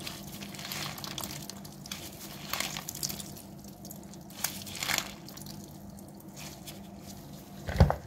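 Salted white cabbage being squeezed hard by hand in disposable plastic gloves to press out its brine: faint wet squishing and dripping into a plastic basin, with a few sharp crinkles, and a louder knock near the end.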